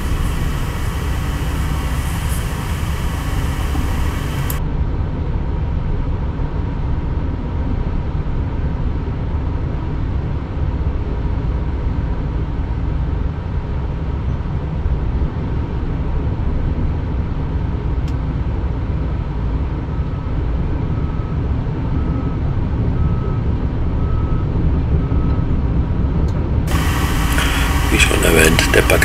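Steady low diesel engine rumble heard inside a stationary heavy truck's cab. A faint beep repeats about every second and a half near the end.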